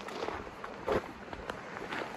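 Footsteps on gravel and light handling noises as a saddle is set onto a horse's back, with one short louder sound about a second in.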